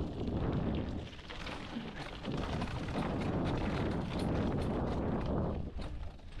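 Mountain bike rolling fast down a dirt singletrack: tyres on dirt and the bike rattling over bumps in many short clicks, with a steady low rumble of wind on the microphone.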